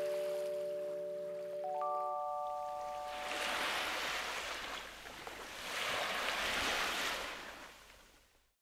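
A short jingle of bell-like mallet notes: a held chord ringing out, then a few higher notes struck about two seconds in, all fading away. Then two swells of rushing noise like waves washing in, each about two seconds long, dying away near the end.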